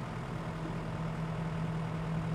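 Hydraulic excavator's diesel engine running with a steady hum as its bucket is slowly lowered.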